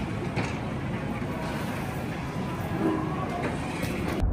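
Steady background din of a large indoor space, with a faint voice briefly about three seconds in.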